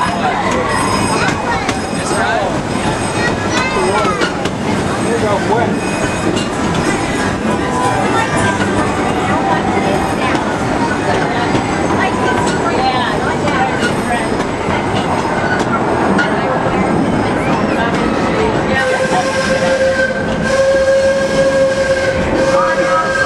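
Narrow-gauge steam train running along, heard from an open-sided passenger coach: a continuous rumble and rattle of the cars on the track. Near the end a steady tone joins in.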